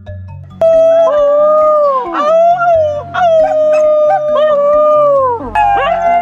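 New Guinea singing dog howling: one long, high note that starts about half a second in and bends slightly in pitch. Near the end a second dog's voice joins in overlapping, sliding howls. Background music with low held notes plays underneath.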